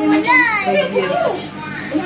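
Chatter of a small family group in a room, with a young child's high voice among the adults.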